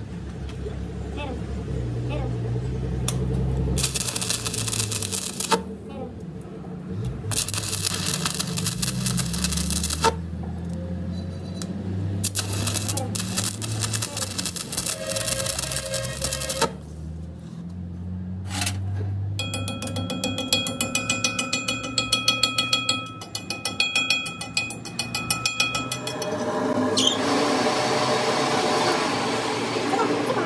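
Stick (arc) welding on a truck axle shaft's flanged end, the arc crackling in runs of a few seconds with short breaks between as weld is built up on the broken shaft. Background music plays underneath.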